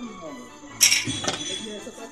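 Background music with one sharp metallic clink a little under a second in, and a lighter one soon after, as a rusty square steel tube is shifted on concrete.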